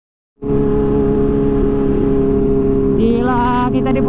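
Kawasaki Ninja H2's supercharged inline-four engine running at a steady speed while the bike is ridden, starting suddenly about half a second in and holding an even pitch. A man's voice joins near the end.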